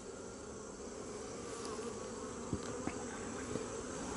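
Honeybees humming steadily over an opened hive full of brood frames, with a couple of faint clicks a little past halfway.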